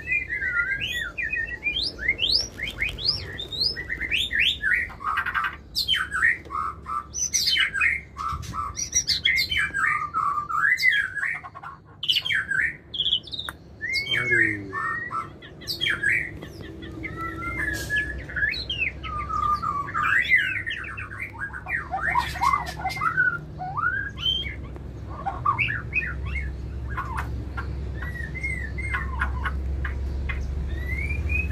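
White-rumped shama (murai batu) singing: a long, unbroken run of varied whistled phrases gliding up and down, with sharp clicks mixed in. It is the male's courtship song to the female, which is usually a sign that he accepts her.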